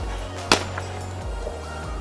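A single sharp crack about half a second in: a plastic Blitzball bat hitting the hollow plastic Blitzball, a grounder. Background music plays throughout.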